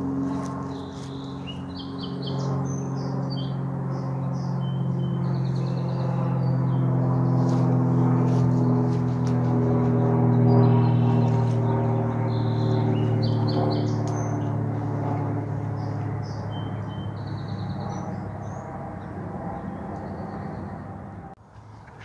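A low, droning hum of several steady tones that slowly fall in pitch. It swells to its loudest about halfway through, then fades, with songbirds chirping over it. It stops abruptly near the end.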